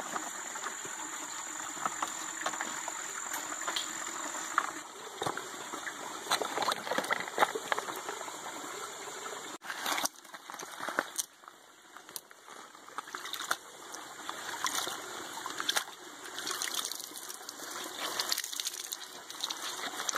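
Small stream trickling over rocks, with intermittent splashes and drips as a cloth bandana is dipped in the water and wrung out.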